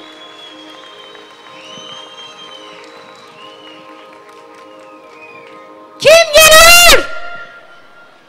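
A stage band's keyboard holds soft, sustained chords over a live PA. About six seconds in, a loud, high-pitched voice comes over the PA for about a second.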